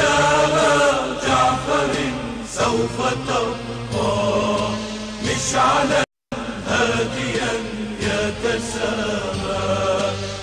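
A group of voices chanting together in held, melodic lines, with a short break about six seconds in.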